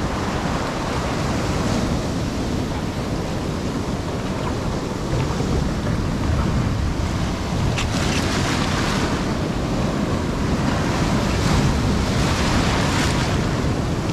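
Sea surf breaking and washing around a shoreline rock in repeated swells, with wind buffeting the microphone.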